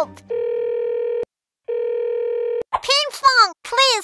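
Phone call ringing tone: two steady electronic rings of about a second each, with a short silent gap between them. Cartoon voices begin near the end.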